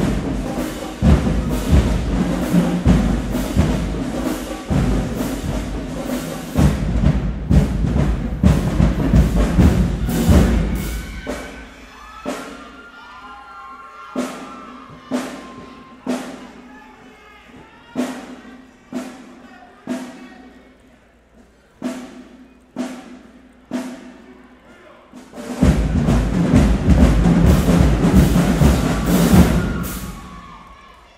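High school marching band playing, brass and drums: the full band plays for about the first ten seconds, drops to single drum hits about once a second, and comes back in full near the end.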